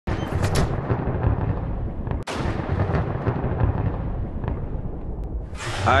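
Storm sound effect: a continuous low rumble of thunder with sharp cracks, one near the start and a louder one after a brief break about two seconds in.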